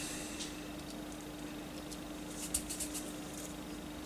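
Fingers handling a small plastic model car body: a few faint light plastic clicks about halfway through, over a steady low hum.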